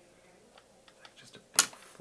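A YAG laser firing a single shot about one and a half seconds in: one sharp click, with a few faint ticks before it. Each shot vaporizes part of a Weiss ring vitreous floater.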